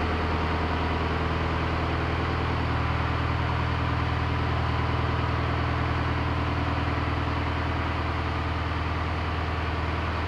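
Turbocharged Detroit Diesel 4-53T, a four-cylinder two-stroke diesel run with added propane, idling steadily while the pickup rolls slowly away, a little fainter near the end.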